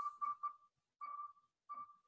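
Wheelofnames.com spinning wheel's tick sound as it slows: short beeps of one pitch, four quick ones in the first half second, then two more spaced farther apart.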